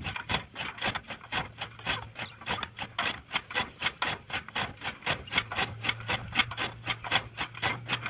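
Hand-cranked chaff cutter (fodder chopper) turned by its flywheel, its blades chopping green fodder in a rapid, even rhythm of rasping strokes, about five a second.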